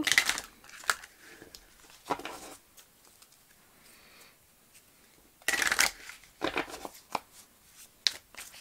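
A tarot deck being shuffled by hand: short bursts of cards rustling and slapping together, with a quiet gap of about three seconds in the middle before a louder burst of shuffling.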